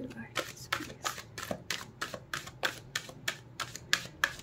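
A deck of oracle cards being shuffled by hand: a quick, even run of crisp card snaps, about five a second.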